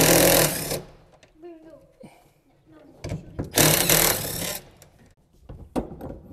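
Cordless drill running in two bursts as it backs out the screws holding a fuel cell's top plate: one that ends under a second in, and a second of about a second and a half starting around three seconds in.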